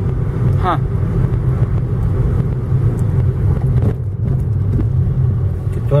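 A car being driven, its engine and road noise heard from inside the cabin as a steady low rumble.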